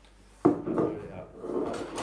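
A champagne bottle being opened: a sudden sharp cork pop about half a second in, followed by a second and a half of hissy noise.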